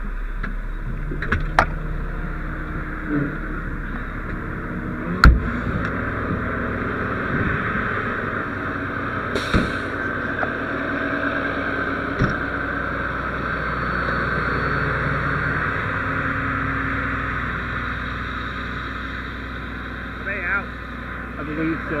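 Steady engine and road-traffic noise around a fire rescue truck, broken by several sharp knocks and clunks, the loudest about five seconds in. Indistinct voices come in near the end.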